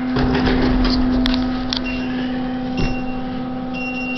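Steady low electrical hum inside an elevator car, with a sharp click about a second in and a few faint, short high beeps later on.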